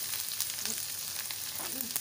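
Grated ginger, garlic, onion and slit green chillies sizzling in hot oil in a non-stick wok, with fine crackles, as a silicone spatula stirs them.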